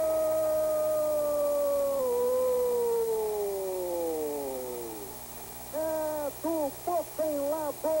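A TV commentator's long drawn-out goal call, one held note that slowly falls in pitch and fades about five seconds in, marking a goal from a penalty kick. He then goes on talking in quick bursts.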